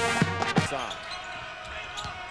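Band music with a steady beat cuts off less than a second in, giving way to quieter arena noise with a basketball being dribbled on a hardwood court.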